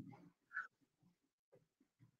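Near silence, with one faint, short high squeak about half a second in.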